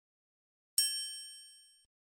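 A single high, bright chime sound effect, struck once about three-quarters of a second in and ringing out over about a second.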